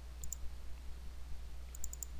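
Computer mouse button clicking: a quick pair of clicks about a quarter second in, then two or three more near the end, over a low steady hum.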